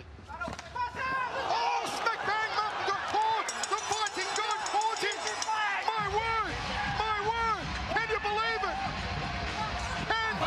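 Several voices shouting and calling out, overlapping, over the crowd noise of a fight arena. About six seconds in, a low rumble abruptly joins them.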